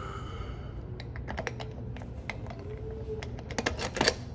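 A key being worked into a metal post office box lock and turned, with light metallic clicks and key jingle that come closer together near the end.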